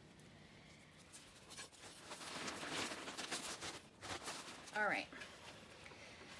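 Potting soil being worked and spread by gloved hands and a hand trowel in a large terracotta pot. The rustling and scraping is heaviest about two to four seconds in.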